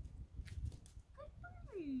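A hound dog whining: two short high notes, then a longer whine that falls steeply in pitch near the end, after a few light clicks.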